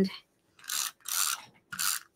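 Handheld adhesive tape runner drawn along the edges of black cardstock to lay down glue: three short strokes in quick succession.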